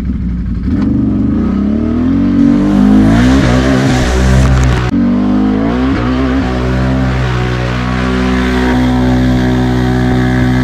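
Can-Am Renegade X mr 1000R ATV engine revving hard through thick clay mud, pitch rising and falling again and again as the throttle is worked, with a hiss of spraying mud and water loudest in the middle. Near the end the revs hold high and steady.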